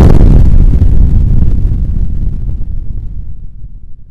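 A loud deep boom that hits suddenly and then rumbles, slowly fading away over about four seconds: an impact sound effect laid under the title card.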